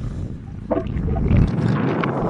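Wind buffeting a phone's microphone as a low rumble, giving way near the end to a brighter rustling hiss as the phone is moved.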